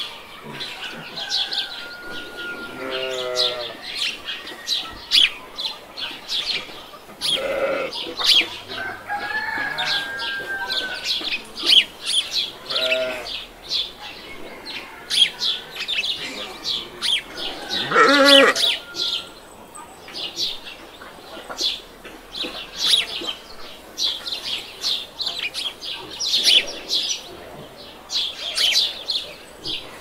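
Birds chirping in many quick, high calls, with farm animals giving several longer calls at intervals. The loudest of these calls comes about 18 seconds in.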